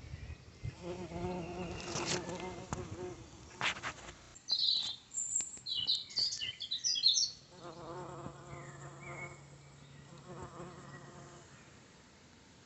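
Bumblebee buzzing its wings in two spells of a few seconds each, a low hum with a rich, even overtone series. Between the spells, around the middle, a bird chirps in quick high notes.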